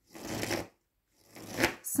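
A deck of cards being shuffled by hand in two short bursts, each about half a second long, a little under a second apart.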